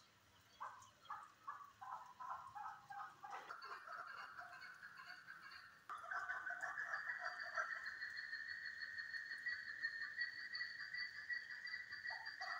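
Chukar partridges calling: a run of short, repeated chuck notes, several a second, that builds up, then from about six seconds in a louder, denser run of calls with a steady high note.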